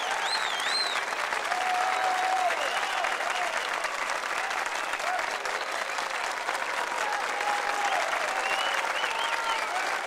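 Audience applauding and cheering, with scattered whoops and whistles over steady clapping.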